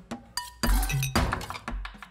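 A run of clinks from a metal spoon striking a bowl, several strikes with dull thuds under them and a brief ringing tone about half a second in, set in a short musical sting.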